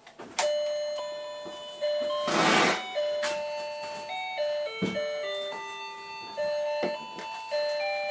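Electronic toy melody from a children's projector drawing table's built-in sound chip: a simple tune of plain, steady beeping notes stepping up and down in pitch. A short rustle of handling comes about two and a half seconds in, and there are a few light clicks.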